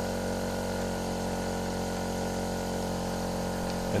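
Small two-stroke portable generator engine running steadily, overloaded beyond its rated maximum, which drags its speed and output voltage down.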